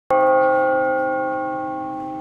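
Bell ringing: a single stroke whose tone slowly fades.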